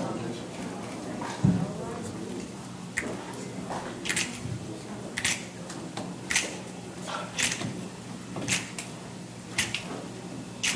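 Finger snaps keeping a steady tempo, about one a second, counting in an a cappella song, over a faint hum in the hall.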